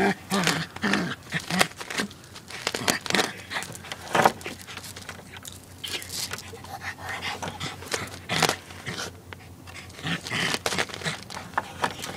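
A small dog wedged through a gap under a wooden fence, scrabbling and scraping with its claws on concrete and against the boards in short, irregular bursts as it strains to reach a mouse.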